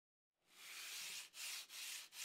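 Fine 220-grit sandpaper rubbed by hand back and forth over a finished wooden stair tread, lightly sanding down raised areas in the polyurethane finish. It starts about half a second in, a dry rasping in three strokes, the first the longest.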